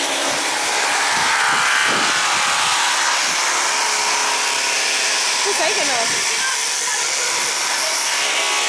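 Steady, loud rushing of wind, with faint voices in the background about two-thirds of the way through.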